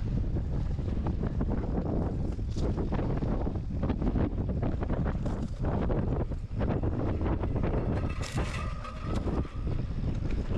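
Strong wind buffeting the microphone over the clatter of a mountain bike rolling across rocky singletrack, with many short knocks and rattles. A brief high whine sounds near the end.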